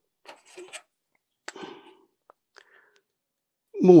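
Faint rubbing and a few small clicks from handling a small foam-tyred tail wheel against the tail of a model plane, followed by a man starting to speak near the end.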